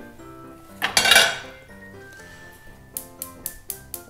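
A metal frying pan is set down on a gas hob with a loud clatter about a second in. Light background music plays throughout, and a quick run of bright ticks starts near the end.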